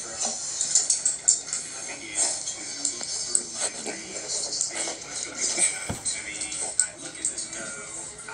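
A home video's soundtrack played back through a tablet speaker: indistinct voices and music, with short scuffling and scraping noises as a dog rolls and thrashes on a rug.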